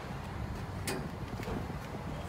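A credit card pushed into a gas pump's chip-card reader, giving one sharp click about a second in and a couple of lighter ticks, over a steady low outdoor rumble.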